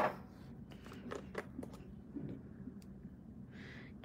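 Scattered light clicks and taps of small items being handled and picked up off-camera while a brush is fetched, over a faint steady low hum.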